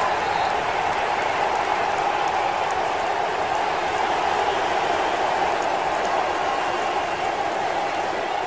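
Large stadium crowd noise: a steady, dense roar of many voices cheering.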